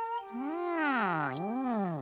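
A cartoon character's drawn-out, wordless vocal sound whose pitch swoops down and back up twice, over a held musical note.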